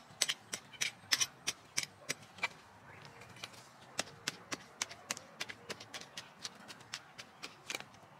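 Metal hand digging tool striking and scraping into heavy clay soil, a string of irregular sharp chops, about two or three a second, thinning out near the end.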